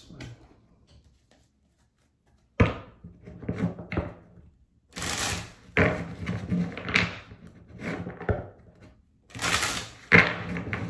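A deck of tarot cards being handled and shuffled by hand. A sharp tap comes about two and a half seconds in, then a few light clicks, then a dense run of rustling and clicking from about halfway that pauses briefly near the end before going on.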